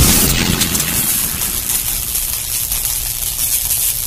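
Intro sound effect: a loud whoosh that hits at the start and trails off into a long, slowly fading hiss.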